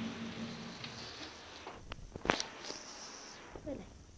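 Quiet handling noise from a built-in shoe cupboard being opened, with one sharp click a little over two seconds in.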